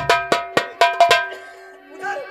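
Stage-music percussion: sharp, ringing, bell-like strikes at about four a second, stopping a little over a second in, over a steady held note that carries on.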